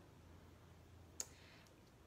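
Near silence: room tone with a faint low hum, broken by one short, sharp click a little over a second in.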